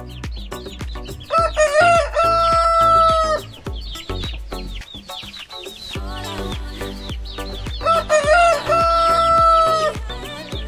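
Rooster crowing twice, about six seconds apart, each crow a broken rising start ending in a long held note, over background music with a steady beat.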